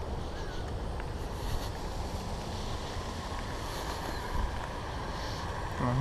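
Wind on the camera microphone: a steady low rumble and hiss.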